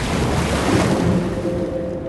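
A rushing, wind-like whoosh used as a dramatic sound effect, with a low rumble under it, holding steady and easing off slightly toward the end.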